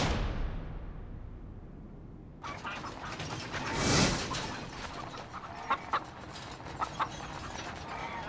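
Chickens clucking in bamboo cages in the back of a moving truck, over steady road noise that cuts in about two and a half seconds in. There are two whooshes, one right at the start and a louder one about four seconds in, and a few short sharp clicks later on.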